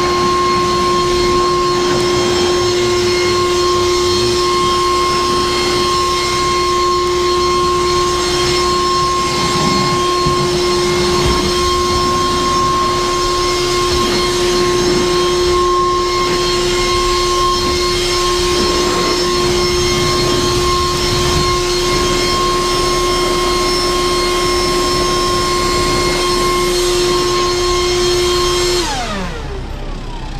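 Makita 36-volt cordless leaf blower, run on two batteries, blowing at full speed: a steady fan whine over rushing air. Near the end it is switched off and the whine falls in pitch as the fan spins down.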